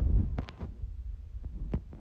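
A low thump, then several short sharp clicks and taps, like something knocking against the phone's microphone.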